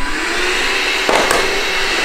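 A small handheld vacuum cleaner running steadily, sucking up crumbs.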